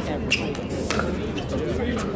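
Two sharp pops of pickleball paddles hitting the plastic ball, a little over half a second apart, over a steady babble of voices.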